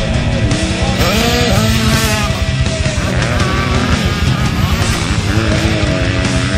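Motocross dirt bike engines revving, pitch rising and falling as the riders accelerate up the hill and through the corner, heard under loud heavy rock music.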